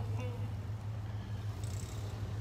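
Steady low drone of street traffic, with a brief hiss near the end.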